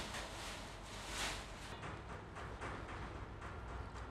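Gloved hands mixing thinly sliced lamb with a wet spice paste in a stainless steel pot: faint, irregular soft strokes as the seasoning is worked evenly through the meat for marinating.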